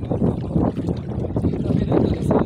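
A motorboat running across open water, with wind buffeting the microphone: a steady, rough rumble.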